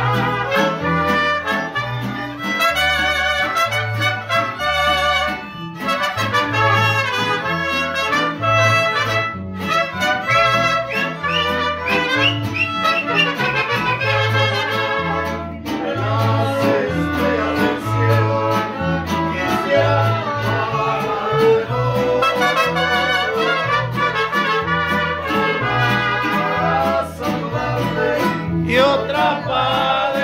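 Mariachi band playing live: the guitarrón plucks a steady alternating bass under strummed guitars, with a melody line with vibrato on top.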